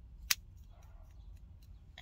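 A single sharp click about a third of a second in, followed by a few faint small ticks, over a faint steady low rumble.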